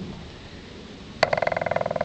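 An animal's rapid trill, a fast even run of pulses at one steady pitch, starting with a click just past a second in.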